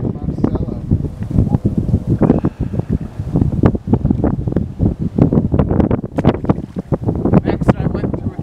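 Wind buffeting the camera microphone in loud, irregular gusts.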